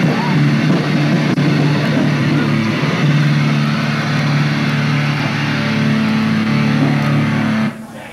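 Punk rock band playing live, with distorted electric guitars, bass and drums, ending the song on a long held, noisy chord that cuts off suddenly near the end.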